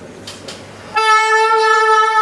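Soprano saxophone holding one loud, steady long note rich in overtones, entering about a second in after a brief quieter lull.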